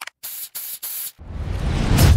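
An aerosol spray can hissing in three short bursts, followed by a swelling rush of noise with a deep rumble that builds to its loudest near the end.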